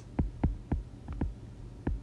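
A stylus tapping and knocking on a tablet screen while handwriting: a series of short, irregular soft taps, several in the first second and another near the end.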